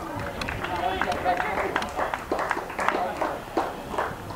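Footballers' shouts and calls on the pitch during play in the goalmouth, with scattered short, sharp knocks throughout.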